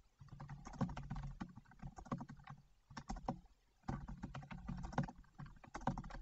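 Computer keyboard typing: quick runs of key clicks, broken by a couple of brief pauses a little after halfway.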